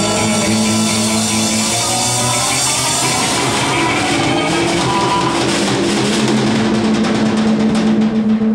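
Live rock band playing an instrumental passage: a drum kit pounding out fills under held electric guitar notes, with no singing.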